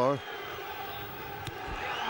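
Steady stadium crowd noise, with a single sharp thud about one and a half seconds in: the rugby ball kicked off the boot at the kick-off.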